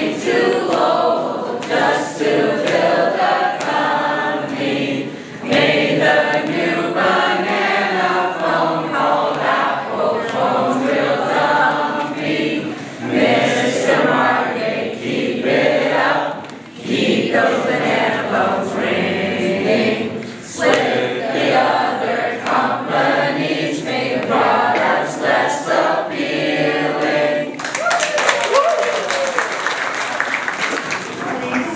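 A group of voices singing without instruments. Audience applause breaks out a few seconds before the end.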